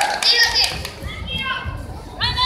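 Children's high-pitched shouts and calls in a large hall during a children's karate bout, a loud burst about half a second in and softer calls a little past a second.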